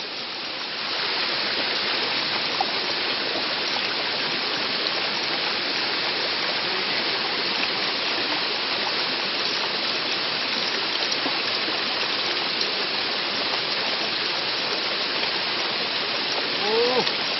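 Steady rushing water noise, even and unbroken, coming up slightly louder about a second in.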